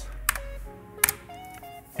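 Background music with a few short stepped notes, and two sharp clicks, about a third of a second and a second in.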